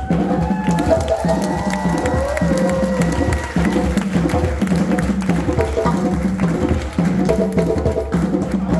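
A West African hand-drum ensemble of djembes and dunun bass drums playing a fast, steady, interlocking rhythm, with low bass strokes in a pattern that repeats about every three quarters of a second under sharp high slaps.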